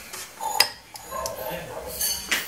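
Kitchen tongs knocking and clinking against a ceramic mug and the air fryer basket as fried squid balls are dropped in, with one sharp click about half a second in.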